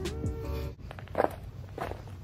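Background music that cuts off abruptly less than a second in, followed by steady dancing footsteps, stomps on the floor about one every half second or so.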